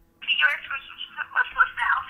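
A girl talking through a phone on speakerphone, her voice thin and tinny, starting a moment in.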